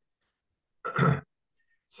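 A person's short voiced sigh, about a second in, lasting under half a second.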